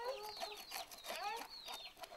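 Chickens clucking and chicks peeping in rapid short calls, fairly faint, with a few sharp knocks of a knife on a wooden board as fish are scaled.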